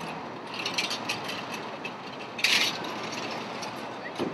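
City street traffic with a run of rapid mechanical clicking and rattling ticks, and one loud, short rattle about two and a half seconds in.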